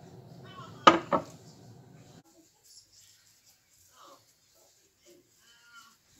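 A brief voice, two quick vocal sounds about a second in, over a low steady hum that cuts off about two seconds in; after that, near quiet with a few faint small sounds.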